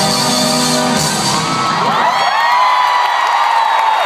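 Loud live concert music with held chords ends about a second in, giving way to a crowd cheering and screaming at high pitch.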